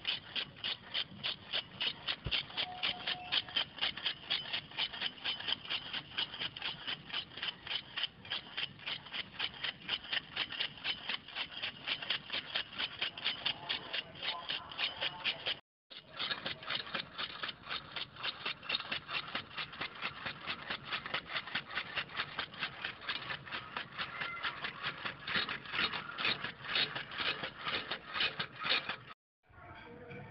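Restored 1930s greens cutter chopping leafy green stalks, its mechanism clicking rapidly and evenly at about four clicks a second. The clicking cuts out briefly twice, about halfway through and just before the end.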